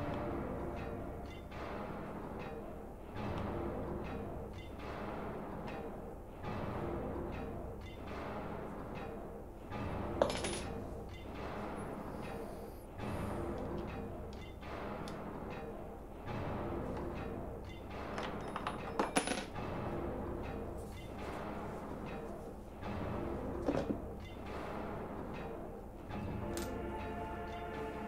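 Background music with a regular pulse throughout. Over it come a few sharp metallic clinks of screws and a hand screwdriver: one about ten seconds in, a cluster about two-thirds of the way through, and another a few seconds later.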